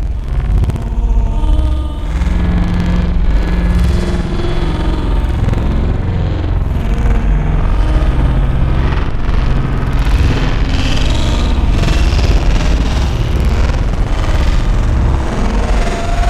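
Dark experimental electronic music: a dense, steady low rumble with short held low synth tones over it, and a noisy upper texture that grows brighter about ten seconds in.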